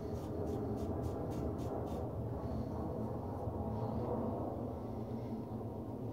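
Fingertips rubbing back and forth over a freshly shaved chin, feeling for missed stubble: short scratchy strokes about three a second that stop after about two seconds, over a steady low hum.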